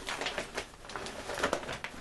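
Plastic tarp being handled and folded over, crinkling and rustling in a quick, irregular run of small crackles.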